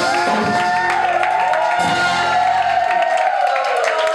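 A cumbia band's closing held note, a long, slightly wavering tone over crowd cheering. The bass drops out about three seconds in, leaving the held note and the crowd.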